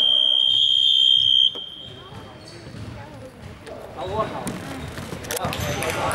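A shrill, steady, high-pitched signal blast in a gym that stops play and cuts off about a second and a half in. Players' voices and calls follow in the hall.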